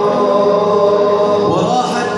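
Men's voices chanting an Arabic devotional song (nasheed) together, in long held notes with a short slide in pitch about a second and a half in.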